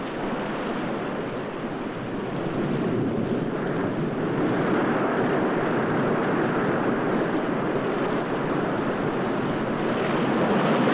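Surf breaking against the base of a rocky cliff: a steady, rushing wash of waves that swells louder about three seconds in.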